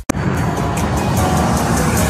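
Rumbling, noisy sound effect in an animated intro's electronic music, starting right after a brief cut to silence.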